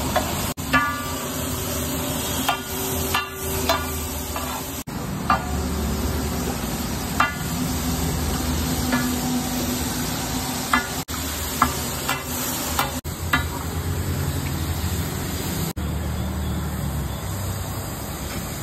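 A metal spatula scraping and clinking against a large flat tawa griddle as vegetables and red masala are stirred and spread, with irregular ringing clinks over a steady sizzle of frying. A low steady hum runs underneath.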